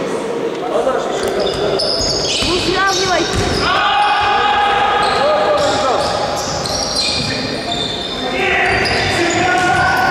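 A futsal ball being kicked and bouncing on a hard sports-hall floor, with sneakers squeaking and players' shouts, all echoing in the hall.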